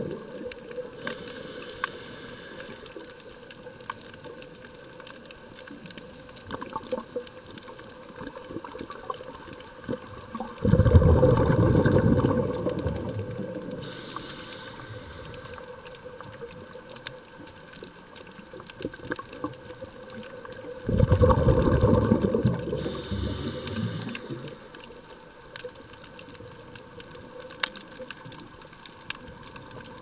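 Scuba diver breathing through a regulator underwater: short hissing inhalations three times, and two loud rushes of exhaled bubbles about ten and twenty seconds in, each lasting a couple of seconds. Faint scattered clicks and a steady low hum fill the gaps between breaths.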